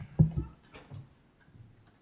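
A few short, low thumps or knocks, the two loudest close together just after the start and fainter ones following.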